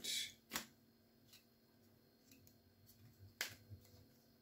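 Topps Match Attax trading cards handled in the hands as a pack is thumbed through: a sharp click of card against card about half a second in and another near the end, otherwise very quiet.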